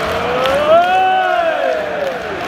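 Football crowd singing a chant together, the many voices holding long notes that rise and fall.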